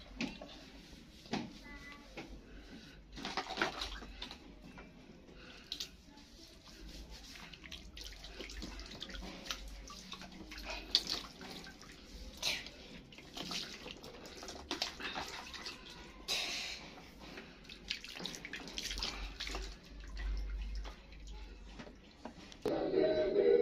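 Water splashing and dripping in a plastic basin as a toddler's hair is washed by hand: irregular splashes as wet hair is scrubbed and water is scooped over it.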